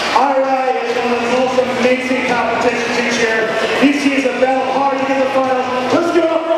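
A voice holding long drawn-out calls, each held at a steady pitch for a second or two before shifting to the next.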